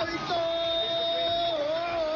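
A voice holding one long note, steady at first and then wavering up and down from about a second and a half in, heard as singing over background music.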